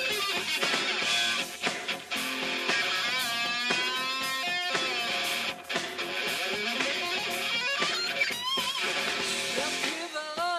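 Heavy metal band playing an instrumental passage: an electric guitar lead with bent, wavering notes over bass guitar and drums, the bends clearest around the middle and again near the end.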